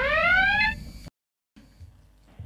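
A siren-like pitched wail rising smoothly for about a second, cut off abruptly by a short dead-silent gap, then faint low noise.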